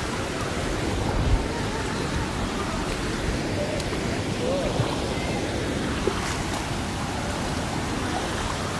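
Shallow stream rushing over rocks, a steady, even rush of water.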